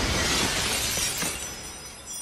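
A large plate-glass window shattering: a dense shower of breaking glass that slowly fades as the shards scatter and fall.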